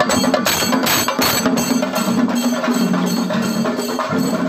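Chenda drums beaten with sticks in a fast, steady rhythm.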